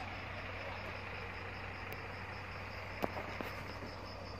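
Steady low hum of an idling diesel dump truck engine, with insects chirping in a fast, even high pulse. There is a single sharp click about three seconds in.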